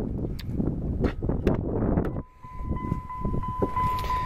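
Driver's door of a 1999 Dodge Ram 2500 pickup being unlatched and swung open, a few sharp clicks over wind and handling noise. About two and a half seconds in, the truck's steady high door-open warning tone starts sounding.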